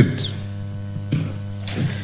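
Steady low electrical mains hum in the chamber's microphone and broadcast feed, heard in a gap between speakers, with a faint brief murmur about a second in.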